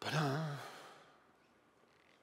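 A man's short voiced sigh with a wavering pitch, lasting about half a second.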